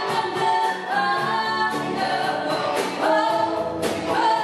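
Live church praise band: two women singing together into microphones over amplified electric guitars, with a steady beat.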